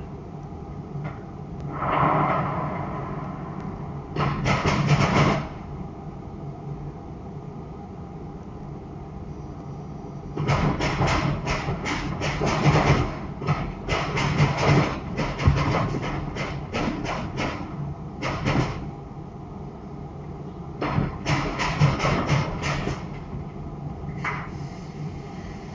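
Bursts of rapid knocking and rattling from the car's underbody during a roadworthiness inspection, over a steady low hum.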